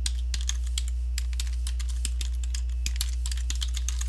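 Typing on a computer keyboard: a quick, irregular run of key clicks over a steady low electrical hum.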